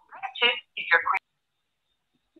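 A woman's voice with a thin, telephone-like sound says a short phrase lasting about a second, then goes silent.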